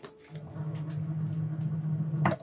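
Cricut Maker 3 cutting machine loading Smart Vinyl: a click, then its motors run with a steady low whir as it draws in the material and moves its carriage to measure the roll.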